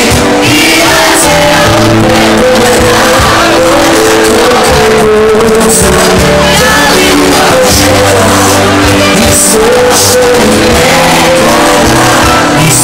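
Live band music with singing, played loud in a club and picked up at a level close to the recording's maximum.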